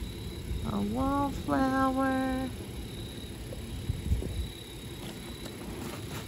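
Plastic bags and paper trash rustling and shifting as hands rummage through a dumpster. About a second in, a woman gives a short wordless vocal sound in two parts, first rising, then held steady for about a second.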